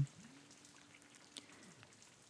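Faint steady rain noise, with a couple of soft ticks of drops.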